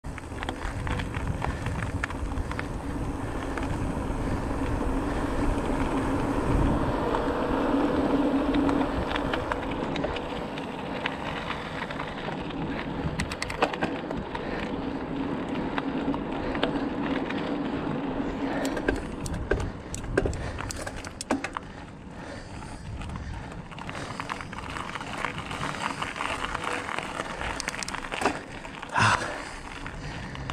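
Bicycle tyres rolling over rough, cracked asphalt, with wind rushing over the microphone and a low hum that swells and fades. Scattered clicks and rattles from the bike come more often in the second half.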